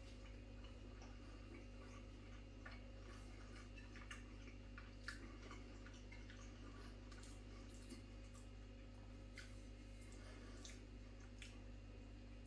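Near silence: a low steady room hum with a few faint, scattered clicks of a person chewing a mouthful of mutton curry with the mouth closed, the clearest about five seconds in.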